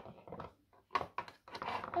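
Small plastic toy figures tapping and clicking against a plastic dollhouse as they are moved by hand, a few light knocks at uneven intervals.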